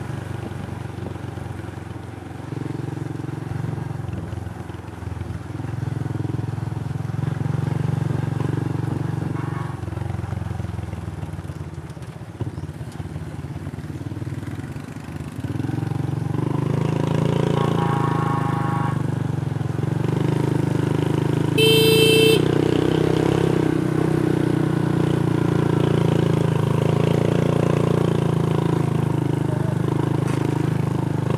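Small motorcycle engine running steadily under way, louder from about halfway through, with a short horn toot about three-quarters of the way in.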